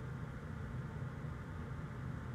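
Steady low hum with a faint even hiss, with no distinct events.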